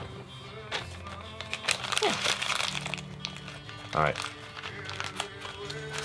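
Crinkling and crunching as something is crumpled up by hand for about three seconds, over music playing in the background.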